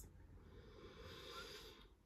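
A woman's slow, deep breath, faint and soft, fading out shortly before the end.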